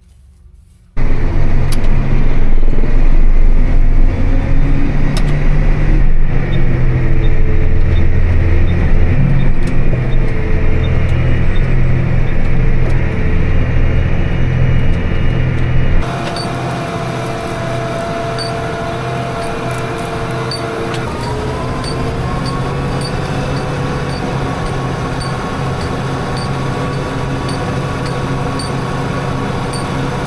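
A loud engine rumble, heavy in the low end, starts suddenly about a second in. After about 16 seconds it gives way to a tractor towing a PTO-driven manure spreader as it spreads manure. The tractor engine and spreader drive run as a steady drone that rises slightly in pitch partway through.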